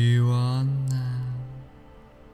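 A man's low voice intoning one long drawn-out sound on a steady pitch for about a second and a half, then fading, over soft background music.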